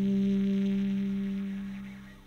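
Calm instrumental background music: a held chord ringing on and fading away toward the end, the close of a piece.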